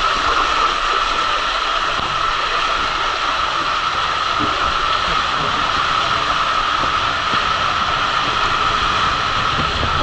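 Steady rushing of water and a rider sliding down inside an enclosed plastic water slide tube, a loud unbroken noise with a sharp hiss in it.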